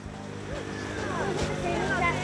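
Indistinct voices of people talking over a steady low engine-like hum.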